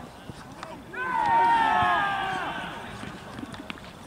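A long, drawn-out shout across an outdoor football pitch, starting about a second in and lasting about a second and a half, dropping in pitch as it trails off.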